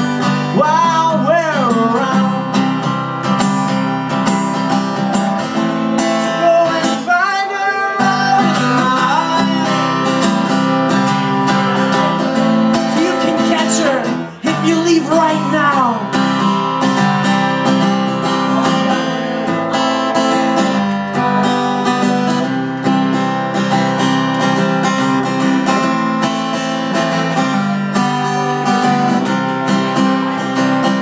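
Acoustic guitar strummed steadily in a live solo performance, with a man's voice singing in a few short phrases, near the start, around seven seconds in and around the middle. The strumming breaks off for a moment about halfway through.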